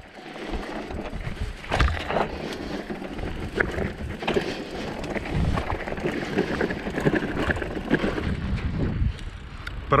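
Mountain bike rolling over a stony dirt trail: tyres crunching on loose gravel, with frequent short knocks and rattles as the bike jolts over bumps.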